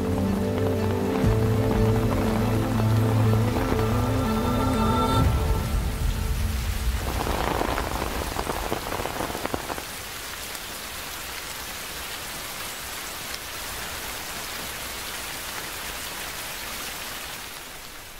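Soft background music fading out over the first five or six seconds as rain takes over. The rain is louder for a few seconds, then settles to a steady fall.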